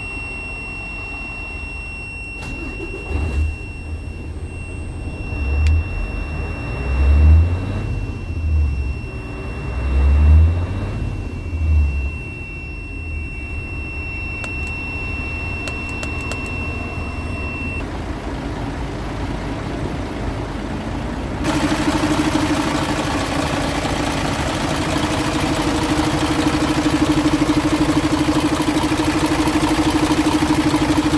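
Mercedes Actros truck diesel engine idling in neutral and revved briefly about six times, rising and falling, in the first dozen seconds, with a steady high tone running through the first half. From about 21 s the engine is heard close up from the open engine bay, idling steadily and louder.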